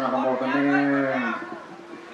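A man chanting a Buddhist blessing into a microphone, holding one long low note that dips slightly and stops about a second and a half in. Fainter voices follow.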